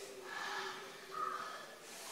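Sharp, breathy breaths through the mouth in two short bursts about a second apart, with another starting near the end: someone coping with the burn of hot chilli.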